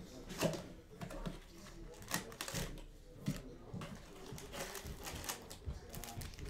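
A cardboard trading-card hobby box being handled and opened, with irregular taps and scrapes of cardboard, and the rustle of foil packs being lifted out near the end.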